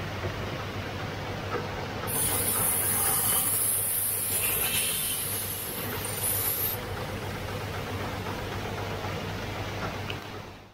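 Motorised grinding lap running with a steady low hum while a crystal lens is ground on it; about two seconds in a loud, high hiss starts as the lens is worked against the spinning lap, and it cuts off suddenly a little under five seconds later.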